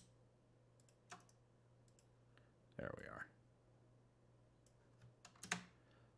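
Faint, scattered clicks of a computer mouse and keyboard over near-silent room tone, with a small cluster of clicks about five seconds in.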